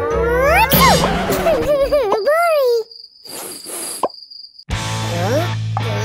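Squeaky cartoon gibberish voices with strongly swooping pitch over background music. It goes quiet briefly about three seconds in, then the music returns with a steady low bass and more short squeaky voice sounds.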